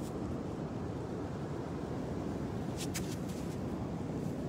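Steady low rumble of wind buffeting a phone's microphone over churned-up ocean surf, with two short clicks about three seconds in.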